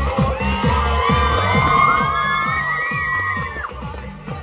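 Amplified electronic dance music with a deep repeating bass beat, and a crowd cheering and whooping over it, loudest in the middle and dying down near the end.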